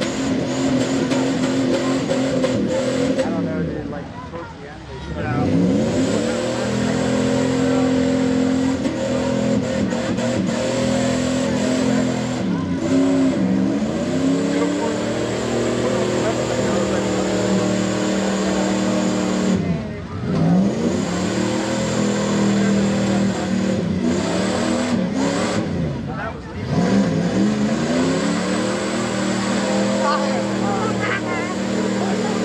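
Dodge Ram pickup's engine revving hard as it spins its tyres through deep mud. The revs dip and climb back up about four times, holding high in between.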